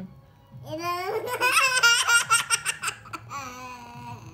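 A toddler girl laughing heartily. The laugh starts about half a second in and breaks into a quick run of high-pitched giggles, about six or seven a second, then fades near the end.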